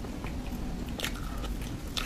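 Close-miked wet mouth sounds of chewing soft cream cake, with a few short sharp smacking clicks, the clearest about a second in.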